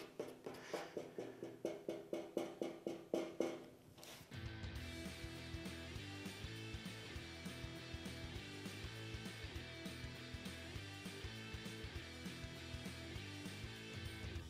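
Coarse 36-grit sandpaper rasping back and forth over partly cured body filler, about four even strokes a second; the filler is still gummy and not yet ready to powder. About four seconds in the strokes stop and rock music with guitar takes over.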